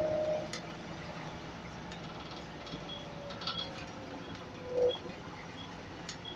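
Volvo Wright Eclipse Urban single-deck bus heard from inside the saloon while moving. A steady engine and drivetrain drone runs under small rattles and clinks from the interior fittings. A whine slides slowly down in pitch and swells briefly just before five seconds in.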